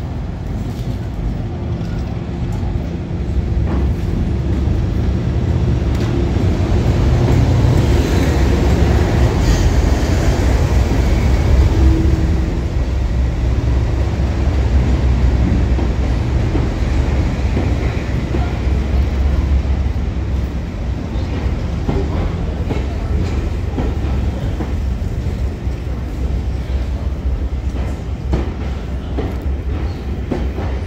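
A diesel-hauled passenger train of BR Mark 1 coaches rolls along the platform, with the locomotive's engine running steadily under the rumble of the coaches. It builds to its loudest about ten seconds in, then slowly fades.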